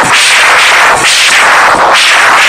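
Live rock band with drums and electric guitars, recorded so loud that the sound is overloaded and distorted, with hard hits coming roughly once a second.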